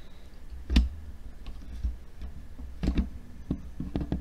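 A few sharp knocks and clicks with a low rumble of handling noise as a desk microphone on a makeshift boom arm is handled and repositioned. The loudest knock comes about a second in, with smaller clicks spread through the rest.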